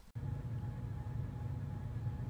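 Steady low hum of a large indoor room's background noise, with a faint steady high tone above it.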